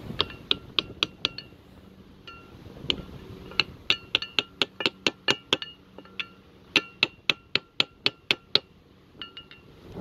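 Claw hammer tapping an aluminum plate laid over a grease seal, driving the seal into a trailer hub a little at a time all the way around to press it in flat and straight. Light metallic clinks with a short ring, in runs of quick taps, about three a second, with short pauses between the runs.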